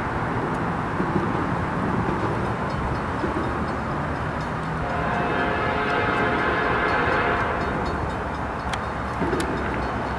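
Norfolk Southern diesel freight locomotives rumbling as the train approaches, and from about halfway in the lead locomotive's horn sounding a steady chord held for several seconds.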